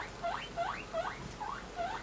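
A guinea pig wheeking: a quick run of short squeals, each rising in pitch, about three a second.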